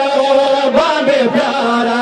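Crowd of male mourners chanting a Pashto noha (Muharram lament) together, their voices holding long, steady notes.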